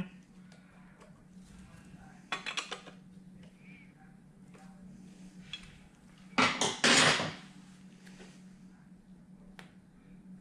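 Metal hand tools clinking and scraping on an engine's timing-belt tensioner as the belt tension is backed off, a short clatter about two and a half seconds in and a louder one at about six and a half seconds, over a faint steady hum.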